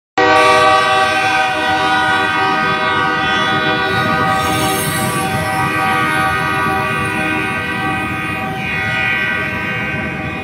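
Freight train rolling past with its horn sounding one long, steady chord over the low rumble of the cars, the horn fading near the end.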